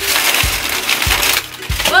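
Plastic snack wrapper crinkling as it is pulled open, for about a second and a half, over background music with a steady low beat.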